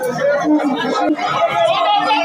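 Several people talking over one another in a crowded hall. A steady low tone sounds briefly under the voices about half a second in.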